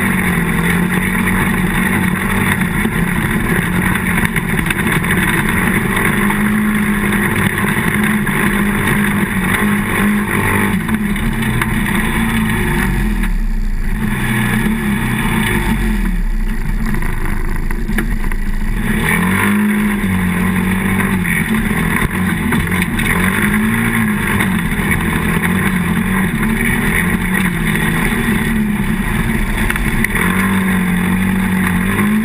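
ATV engine running as the quad rides a rough dirt trail, its pitch rising and falling with the throttle. It eases off and drops low for several seconds about midway, then picks up again.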